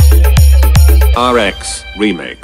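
Purulia-style DJ remix dance music with a heavy bass kick drum on a fast, even beat of about three kicks a second. About a second in the beat cuts out and a pitch-swept, processed voice tag of the DJ remix begins.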